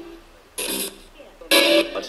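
Homemade ghost box fitted with Response Box parts, sweeping through radio stations: two short chopped bursts of broadcast voice and music, each under half a second, with quieter static between them.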